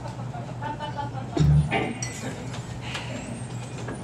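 Between-song stage noise: scattered murmured voices over a steady low hum, a few small clicks, and one short, deep thump about a second and a half in.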